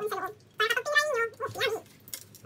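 A high-pitched voice in a few short runs of syllables.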